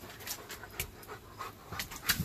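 German Shepherd panting open-mouthed, a quick uneven run of breaths.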